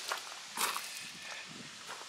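Footsteps on gravel: a few steps about half a second apart.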